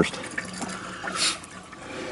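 A mix of waste motor oil and diesel pouring from a plastic gas can into a car's fuel filler neck, a steady low splashing that is briefly louder a little over a second in.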